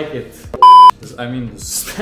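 A short, loud, steady high-pitched beep lasting about a third of a second, about half a second in, cutting into men's conversation. It is the kind of edited-in censor bleep laid over a spoken word.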